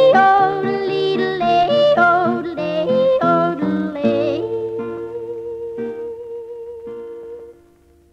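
Female country yodel over instrumental backing, the song's final phrase with quick leaps in pitch. About four seconds in the voice stops, and the last held notes ring on and fade out near the end.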